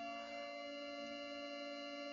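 A steady electronic drone of several held tones that does not change in pitch, the background music bed running under the narration.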